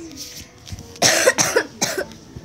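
A child coughing: three short coughs in quick succession about a second in, after a quiet start.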